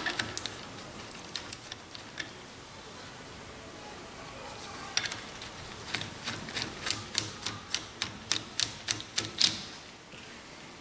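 Ratchet wrench clicking as a sway bar end link nut is snugged up: a few scattered clicks at first, then a steady run of about three clicks a second from about halfway in.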